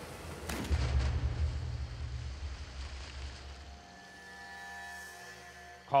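A single gunshot about half a second in, fired into a hooked alligator, followed by a deep low boom that dies away over about three seconds. Steady music tones come in near the end.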